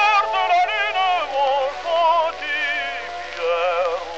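Early gramophone recording of an operatic tenor singing a French serenade with accompaniment. The melody comes in short phrases with a wide vibrato. The sound is thin, without deep bass or high treble.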